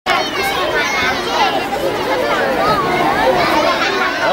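A crowd of children's voices chattering and calling out over one another, cutting in abruptly.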